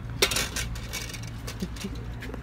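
A sharp clink of steel utensils at a golgappa cart, followed by a brief spell of lighter clinks and clatter, over a low steady hum.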